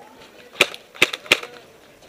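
Paintball markers firing: three sharp pops about half a second apart, with a fainter pop between the last two.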